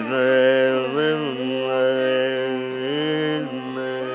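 A male Carnatic vocalist singing long held notes that slide up and down between pitches, over a steady drone.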